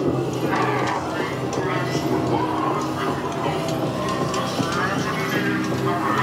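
Haunted-house soundtrack: a steady low droning music bed, with wordless voices yelling and shrieking over it several times.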